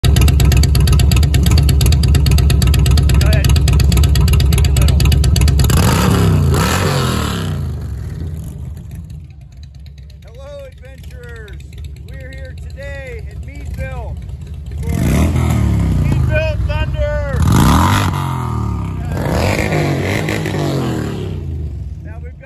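Loud V-twin motorcycle engine running through Rinehart aftermarket exhaust pipes, falling away about six seconds in. Later two more motorcycle engines swell up and change pitch as they rev or pass.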